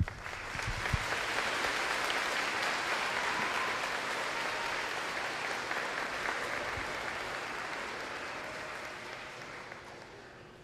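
Audience applauding, starting suddenly, building over the first second and then slowly dying away toward the end.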